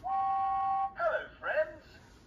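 Thomas & Friends Talking James toy engine's sound chip playing through its small speaker after its try-me button is pressed: a steady held tone for about a second, then a brief high-pitched voice phrase.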